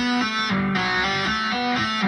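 Electric guitar playing a fast legato tapping run on the D string: right-hand taps and left-hand hammer-ons, the notes changing about four or five times a second.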